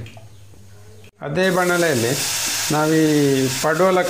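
Snake gourd pulp sizzling as it fries in oil in a pan, starting about a second in, with a voice holding long notes over it.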